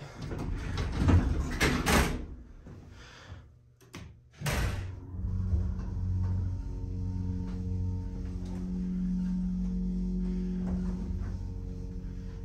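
Elevator doors sliding shut, then after a short lull a thump as the hydraulic elevator's pump motor starts. The motor then runs with a steady low hum of several held tones while the car rises.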